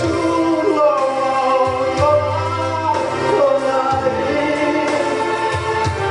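A man singing a ballad into a stage microphone over accompanying music, with a bass line that moves to a new note every second or two.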